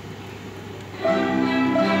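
Low room hum, then about a second in a student string ensemble begins playing, with held notes sounding together.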